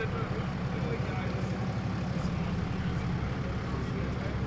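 Steady low rumble of idling vehicles, with faint voices of people talking in the background.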